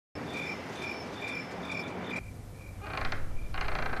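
Night-time cricket chirping, a short high chirp repeated about twice a second over a steady hiss. The chirping and hiss drop away about two seconds in, and a fuller sound builds near the end.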